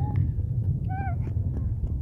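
Wind rumbling on the microphone, with one brief high-pitched call from a small child about a second in.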